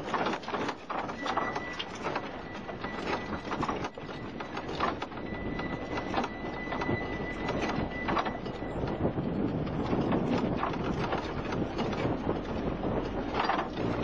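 Vehicle driving fast over a rough dirt track, its body rattling and knocking with many irregular jolts over a steady rumble of engine and road noise.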